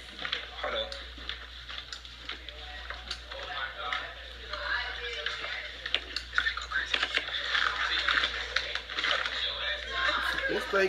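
Muffled, indistinct voices with faint background music and scattered small clicks.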